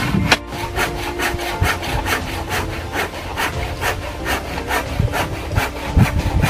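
A large knife blade shaving and scraping the end of a rough wooden pole in quick, regular strokes, about four a second.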